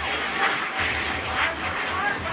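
Outdoor soccer-match ambience on the camera's microphone: a steady rushing noise with a pulsing low rumble and a few faint, short shouts.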